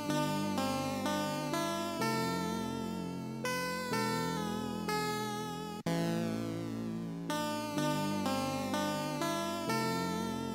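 The beat's melody looping back from FL Studio without drums: a run of held notes, each fading away. About six seconds in, the loop cuts out for a moment and starts over.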